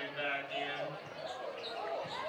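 A basketball being dribbled on a hardwood gym floor, heard over the voices of a crowd in the gym.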